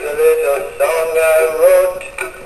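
Big Mouth Billy Bass animatronic singing fish playing its built-in song: singing with backing music through the toy's own speaker.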